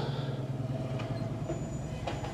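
A steady low hum inside a car cabin, with a faint thin high whine joining about halfway through.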